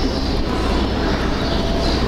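Marker pen writing on a whiteboard, its strokes giving short high squeaks, over a steady loud background hum.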